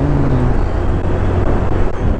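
Honda Beat scooter's small single-cylinder four-stroke engine running at a steady cruising speed, with wind rushing over the camera microphone and road noise.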